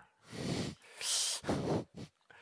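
A man breathing out in three short, breathy puffs close to a headset microphone, as quiet unvoiced laughs.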